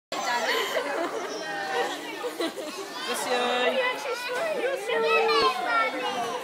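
Overlapping chatter of several voices, children's and adults', with no single clear speaker; some of the voices are high and rise and fall in pitch.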